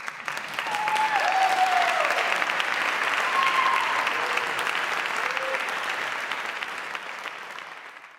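Concert hall audience applauding: a dense crackle of many hands clapping that starts abruptly and fades out near the end.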